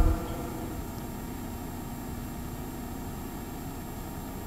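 A pause with steady room tone: an even low rumble and faint electrical hum from the hall's sound pickup, with a brief low thump right at the start.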